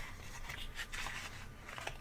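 Faint rustling and scraping of trading cards and their cardboard packaging being handled.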